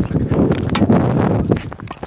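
Tennis rally on an outdoor hard court: a player's quick running footsteps with sharp knocks of racket and ball among them.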